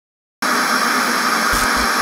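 Dead silence for a split second, then a loud, steady hiss of static that lasts about a second and a half and stops as the next speech begins: a static-noise transition effect between edited segments.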